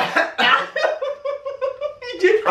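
Laughter: a sharp outburst at the start, then a quick run of short, even 'ha-ha-ha' pulses on a steady, fairly high pitch.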